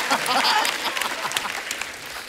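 Studio audience applauding, with laughter mixed in, after a joke; the applause dies away over the two seconds.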